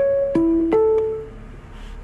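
Onboard PostAuto bus announcement chime: three bell-like notes about a third of a second apart, high, then low, then middle, each ringing out and fading. It signals the start of an announcement.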